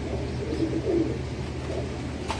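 Domestic pigeons cooing low, loudest about half a second to a second in, over a steady low hum.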